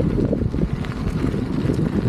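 Wind buffeting the camera microphone as it moves along with a rider on a Begode Master electric unicycle: a steady, loud, low rumble that flutters unevenly.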